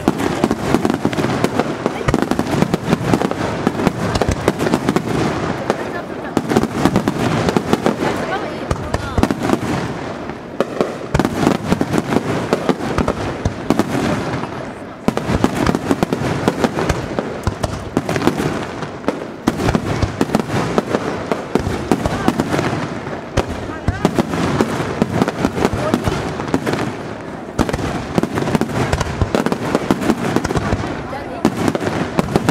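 Wide starmine fireworks display: a dense, continuous barrage of shell bursts and launches, many reports a second, with a few brief lulls.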